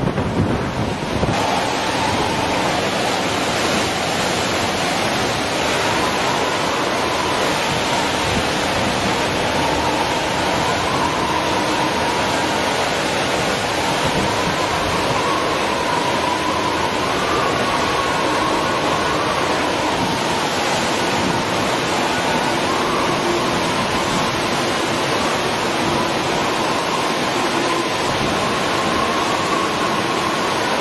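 Cyclone gale blowing steadily, with a thin wavering whistle in the wind, after a short stretch of surf and wind buffeting the microphone in the first second or so.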